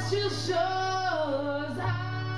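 Singing: a voice holding long notes that slide between pitches, over a steady low drone.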